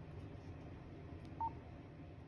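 A single short keypad beep from a Motorola APX 6000 portable radio as its location menu softkey is pressed, about one and a half seconds in, over a faint room background.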